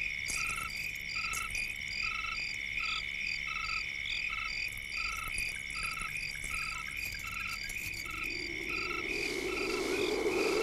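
Night chorus of insects and frogs: a steady high insect trill, with a short call repeating about every three-quarters of a second. Near the end a low rushing noise swells in underneath.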